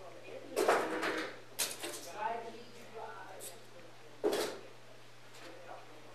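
Handling noise close to a body-worn camera's microphone: three short scraping, rustling bursts, the last about four seconds in, over a steady low electrical hum, with faint muffled voices between them.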